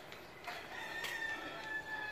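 A rooster crowing once, faintly: one long call that starts about half a second in.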